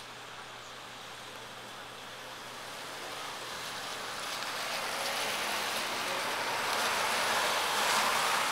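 Street traffic: the tyre and engine noise of a passing car swelling steadily over several seconds, loudest near the end.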